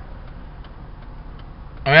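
Steady low car-cabin background noise with a few faint, irregular ticks, then a man's voice coming in near the end.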